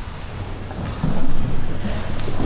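Low steady hum and rumble of room noise, with a louder muffled stretch starting about a second in.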